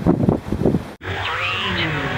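Wind gusting on the microphone over surf, cut off abruptly about a second in. It is followed by a logo sound effect of sweeping tones that glide up and down.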